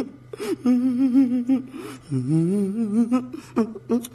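A man humming a wavering tune in two long phrases, followed by a few short vocal sounds near the end.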